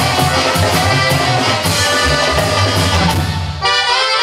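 Live duranguense-style band, with saxophones, accordion, drum kit and keyboard, playing an upbeat instrumental passage. About three and a half seconds in, the drums and bass drop out, leaving a held chord.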